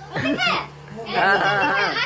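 Only speech: a high-pitched voice in two stretches, the second longer, over a faint steady hum.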